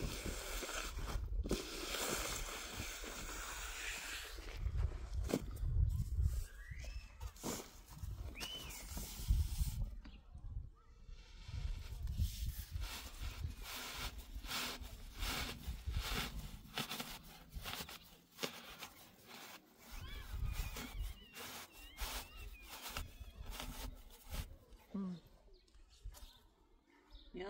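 Steel trowel scraping and smoothing wet concrete on a cast slab, in a long run of short scraping strokes.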